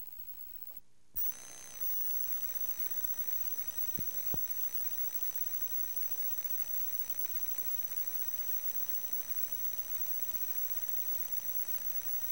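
Videotape audio track with no program sound: hiss, then a brief dropout and a click about a second in. After the click a steady high-pitched electronic whine runs on over the hiss, with two small clicks just after four seconds.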